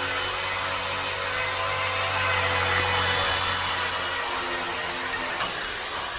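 Blade 200 SRX electric RC helicopter in flight: a steady high whine from its motor and spinning rotors. The sound eases off somewhat in the last two seconds as the helicopter comes down onto the floor.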